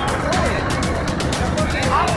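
Tractor engines running, mixed with voices and music with a regular beat.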